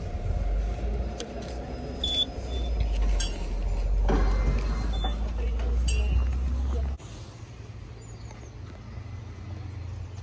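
A short high beep from a turnstile ticket scanner and the clicks of the turnstile, over a low rumble that cuts off suddenly about seven seconds in.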